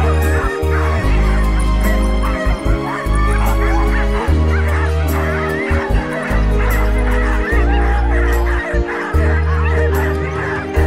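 A pack of harnessed huskies keeps up a chorus of high, wavering yelps and howls. Over it runs background music with heavy, steady bass notes that change every second or two.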